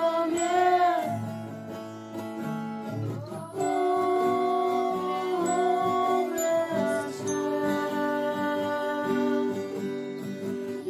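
Children and a woman singing a song together, accompanied by acoustic guitar, a glockenspiel and a recorder. There is a short dip at about three seconds, then a new phrase begins.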